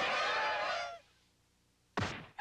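A flock of goose-like honking calls, many overlapping, that cut off abruptly about a second in and leave near silence, with a sharp thump right at the end.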